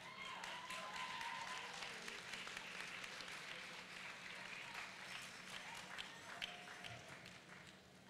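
Faint audience applause: many hands clapping, swelling about a second in and tapering off toward the end, with a voice or two calling out over it.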